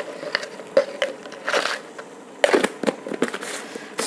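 A plastic spoon scraping and scooping coarse salt in a glass jar, with a few short knocks and rustles as kitchen containers are handled.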